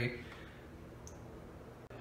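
Quiet room tone with a faint click about a second in and another just before the end.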